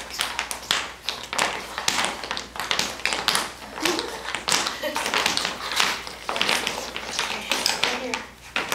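Young children's tap shoes clicking irregularly on a wooden floor as they walk, several taps a second.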